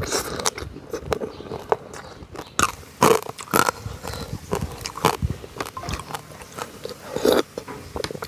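Close-miked chewing and biting through crab shell, with repeated sharp crunches; the loudest crunches come about three seconds in and again near the end.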